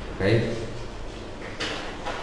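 Speech: a man says one short word in a roomy, reverberant space, over a low steady hum. Near the end comes a brief hiss.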